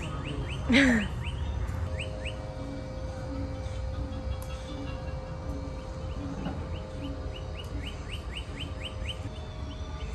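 A small bird chirping over and over in quick short notes, with one louder sweeping call about a second in. Faint music and a low steady rumble run underneath.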